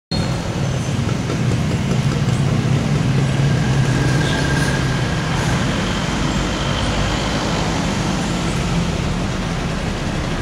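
Steady low rumble of road traffic, with a vehicle engine running and no break in the sound.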